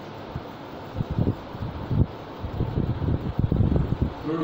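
Chalk knocking against a blackboard as a line of words is written: a run of irregular soft knocks starting about a second in, over a steady background hiss.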